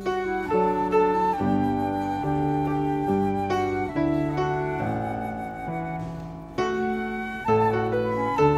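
Instrumental music from a small ensemble: flute and clarinet playing a melody in held notes over acoustic guitar and piano. The music thins out about six seconds in, then swells back up.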